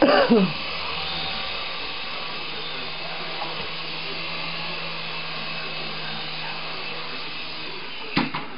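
Syma S107G toy coaxial RC helicopter's small electric motors and twin rotors whirring steadily in a hover, stopping near the end.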